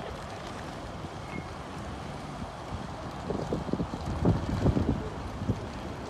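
Wind noise on a phone microphone outdoors: a steady rush, with a run of low buffeting thumps from about halfway through.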